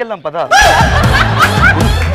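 Laughter in short repeated bursts, then about half a second in loud music cuts in over it.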